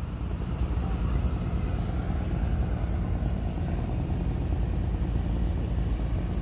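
A small river boat's engine running steadily under way, with an even low hum.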